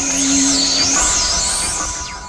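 Experimental electronic synthesizer music: high whistling tones gliding up and down over a steady low drone, which drops out about a second in.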